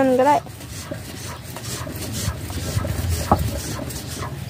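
Hand-lever water pump being worked: the handle and plunger rubbing and scraping with each stroke, with a couple of faint knocks.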